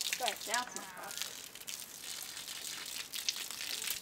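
Water spraying and splashing from a garden hose, a steady hiss with small spatters.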